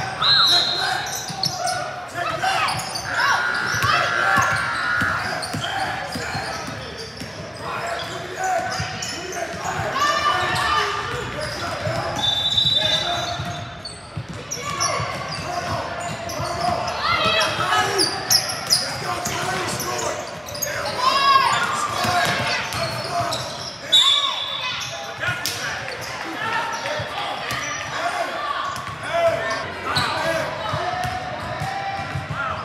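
A basketball game echoing in a large gym: the ball dribbling and bouncing on the hardwood court, with players and spectators calling out. A few short high squeaks or tones stand out now and then.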